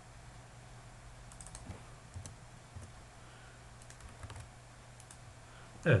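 Faint computer keyboard keystrokes and clicks, coming in small scattered clusters over a low steady hum.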